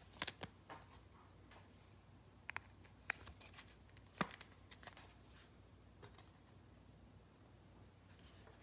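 Faint, scattered clicks and taps of trading cards being handled, a few sharp little ticks in the first half, then near quiet.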